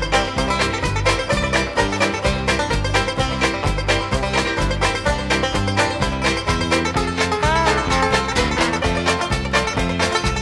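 Banjo instrumental played back from a vinyl LP: bright plucked banjo notes in a brisk, even beat over a steadily alternating bass line, with one sliding note near the end.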